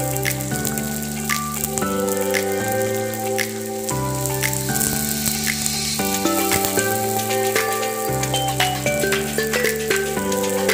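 Background music of sustained chords changing about every two seconds, over the crackling sizzle of sliced onions deep-frying in hot oil in a wok.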